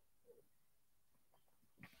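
Near silence: room tone, with a faint brief sound about a third of a second in and another just before the end.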